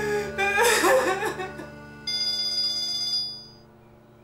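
A woman sobbing and crying out over soft background music, then a phone ringtone about two seconds in, sounding as a cluster of steady high tones for about a second before it cuts off.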